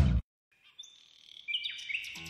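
Wild birds chirping with short, high whistled calls starting about a second in, one call sliding down in pitch near the end. Before that, loud music cuts off abruptly.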